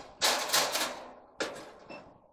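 Rattling and scraping of handling noise as multimeter probes and wire connectors are worked against the terminals and sheet-metal cabinet of a clothes dryer. Two short bursts come, one just after the start and one near the middle, each fading quickly.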